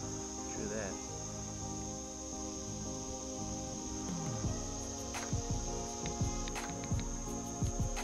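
A steady, high-pitched drone of insects, typical of crickets or katydids, under background music. Scattered short clicks and knocks come in during the second half.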